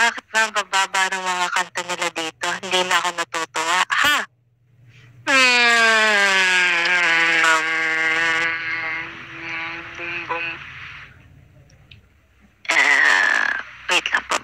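A woman's voice close to the microphone: a run of quick spoken syllables, then one long drawn-out vocal sound held for about five seconds, sliding down at its start and then holding a steady pitch as it fades, before she talks again near the end.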